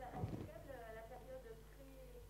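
Faint human voice: a short burst of laughter, then a quiet wavering voice.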